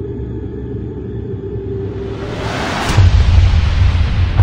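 Cinematic intro soundtrack: a low rumbling drone, then a rising whoosh that swells from about two seconds in, ending in a deep bass hit about three seconds in that keeps booming.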